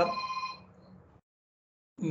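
A steady electronic tone sounding at several fixed pitches at once, like a phone ringing. It overlaps the end of a man's spoken word and stops about half a second in, after which the audio drops to dead silence.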